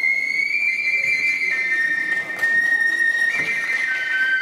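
Kagura transverse bamboo flute playing long, high held notes: the pitch steps down about a third of the way in, jumps back up near the end and drops again at the close.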